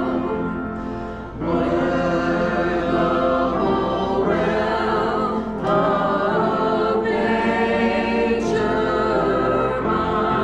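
Small church congregation singing a hymn together from hymnals, in long held notes and phrases with brief pauses between lines.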